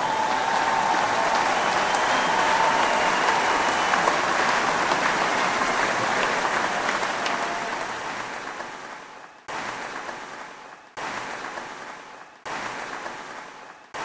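Audience applauding. The clapping starts abruptly as the music stops, holds steady, and fades out from about eight seconds in. Then three short bursts of applause each cut in suddenly and die away.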